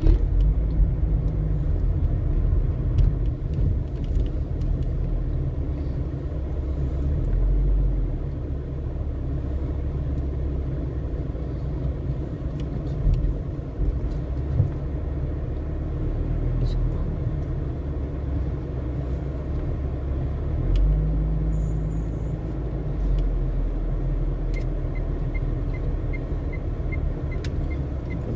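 Car engine and road noise heard from inside the cabin while driving slowly, a steady low rumble that shifts a couple of times as the speed changes.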